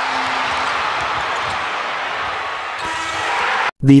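Large basketball-arena crowd cheering, a steady roar of many voices, which cuts off abruptly near the end.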